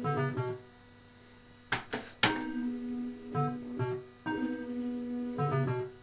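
Electrocoin Super Bar-X fruit machine on auto start, playing its short electronic reel-spin jingle in repeated phrases. About two seconds in there are three sharp clacks, the reels stopping one after another.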